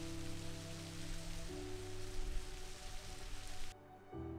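Steady splashing hiss of a thin waterfall falling down a rock cliff, with soft background music of held notes underneath. The water sound cuts off sharply near the end, leaving only the music.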